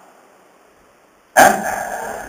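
A quiet pause, then a man's short, drawn-out questioning exclamation "Eh?" that starts abruptly a little after halfway through.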